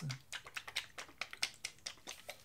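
Faint, quick light clicks, about five a second, as acrylic-pour cell activator is squeezed from a plastic bottle onto a metal wall scraper.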